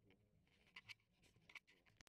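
Near silence, with a cluster of faint, short scratchy rustles in the middle.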